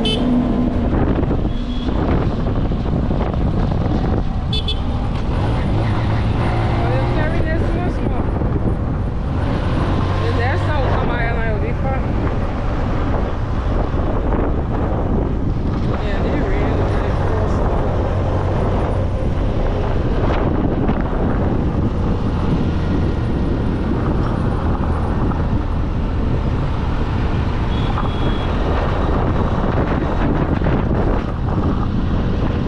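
Motorcycle engine running steadily under way, with a loud, constant rush of wind and road noise over the microphone.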